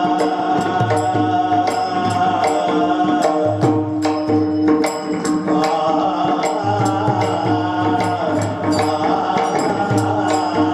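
Varkari kirtan music: a voice sings a devotional abhang melody over a steady drone, with hand cymbals struck in a steady beat.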